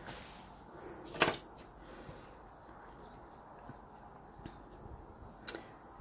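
Low room noise with one short, sharp knock about a second in and a fainter tick near the end, small hard objects knocking on the work table.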